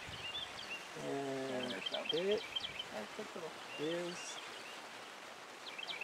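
Small birds chirping faintly in a rapid run of short high chirps, mostly in the first half, with a few low drawn-out voice-like calls heard about a second in and again near the middle.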